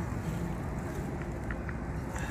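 Steady low wind rumble on the microphone, with a few faint clicks about one and a half seconds in.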